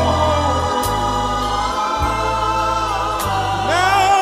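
Gospel choir holding long sustained notes in harmony over a bass line that moves to a new note about every second, with a few cymbal strikes.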